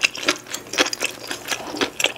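Close-miked chewing of pepperoni pizza: a run of wet mouth clicks and smacks, about three a second, uneven in spacing.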